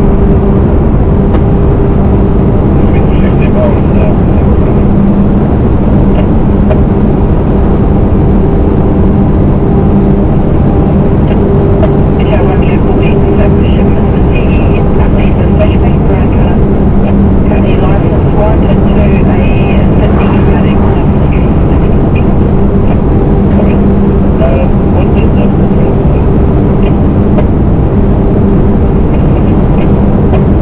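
MAN 4x4 truck's diesel engine running at a steady cruising speed, a constant low drone under heavy rushing wind and road noise at a microphone mounted above the cab.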